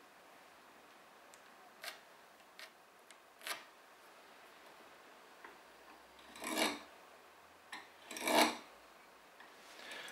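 Steel marking knife scoring lines along a steel rule across the end grain of a wooden blank: a few faint taps and ticks in the first few seconds, then two longer scraping knife strokes of about half a second each in the second half.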